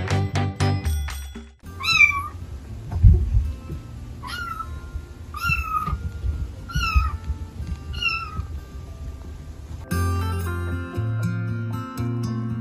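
A cat meowing five times, a second or two apart. Each call is high-pitched, rising and then falling. Plucked background music plays briefly at the start and again near the end.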